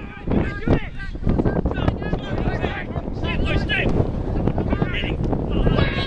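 Wind buffeting the microphone in a steady low rumble, with players' shouts carrying across an open football pitch, loudest about three and a half seconds in and near the end.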